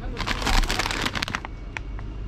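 Plastic snack bags crinkling as a bag of spicy crisps is pulled out from a tightly packed shelf: a dense rustle for about a second and a half, then a single click.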